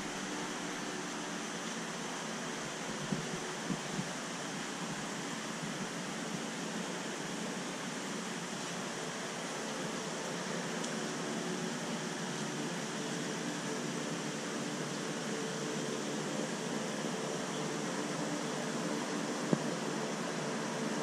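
Steady hiss with a faint hum from running aquarium equipment: pumps, moving water and fans. A few faint clicks come about three to four seconds in and again near the end.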